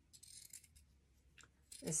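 Faint rustling, then a single light metallic click about a second and a half in: scissors and fabric being handled before the cut. A woman starts speaking at the very end.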